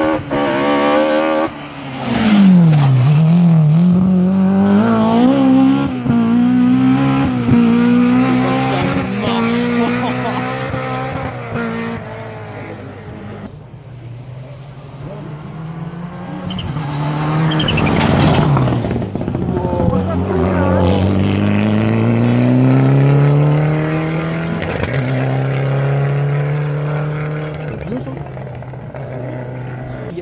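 Two rally cars race past one after the other. Each accelerates hard, its engine pitch climbing through the gears and dropping at each shift. The first is loudest from about two to twelve seconds, and the second builds from about sixteen seconds in.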